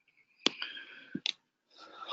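A few sharp clicks: one about half a second in, then two more close together a little after one second.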